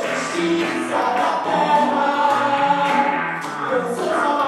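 Live band music: several voices singing held notes over a steady hand-drum beat, with electric guitar and saxophone in the band.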